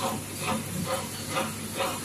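Disposable-cutlery flow-wrap packaging machine running, its sealing and wrapping cycle pulsing about twice a second over a steady hiss.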